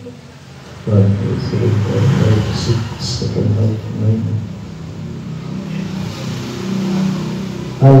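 A man's voice reading Arabic text aloud from a book into a handheld microphone in a low, sing-song murmur, starting about a second in.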